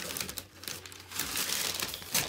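Cardboard box and its paper packing rustling and crinkling as they are handled, in irregular crackly bursts with a short lull about half a second in.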